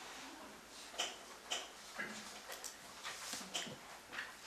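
A few short clicks and taps, roughly one every half second from about a second in, in a quiet room.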